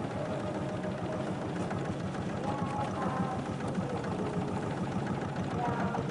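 Motorboat engine running steadily as a narrow wooden boat passes across the lake.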